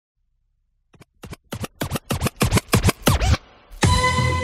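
A DJ scratching a record on a turntable: a run of quick back-and-forth scratch strokes, about four a second, starting about a second in and growing louder. Near the end the track's music comes in with a held note.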